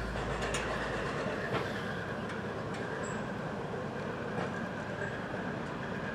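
Small park railway train running along its track: a steady rolling noise with scattered short clicks from the wheels on the rails.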